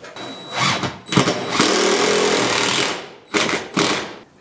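Power screwdriver driving screws into plywood wall sheathing: a couple of short bursts, one longer run of about a second, and another short burst near the end.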